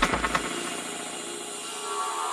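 Electronic dance music from a DJ mix. The drums and bass drop out about half a second in, leaving a held synth chord.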